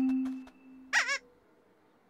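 Edited children's-show audio: a short held note fading out, then, about a second in, a brief high-pitched warbling squeak.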